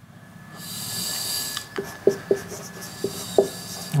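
Marker pen writing on a whiteboard: one longer hissing stroke about half a second in, then several short squeaky strokes as letters are formed.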